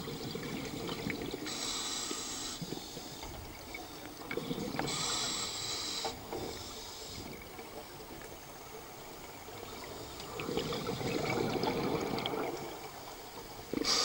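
Scuba diver breathing through a regulator underwater: short hissing inhalations about two and five seconds in, and bubbling exhalations, the longest from about ten to thirteen seconds in.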